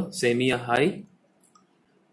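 A man's voice speaking for about a second, then a pause of near silence.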